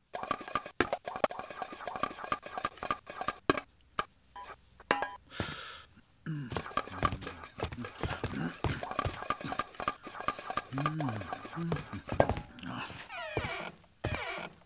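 Sound effects from an electronic film soundtrack: rapid clicks and clinks, a short hiss about five seconds in, and wordless voice-like sounds with gliding pitch in the second half.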